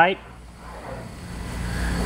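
Sheet-metal fender-flare panel being rolled back and forth through an English wheel, stretching in crown: a rolling rumble that builds gradually louder.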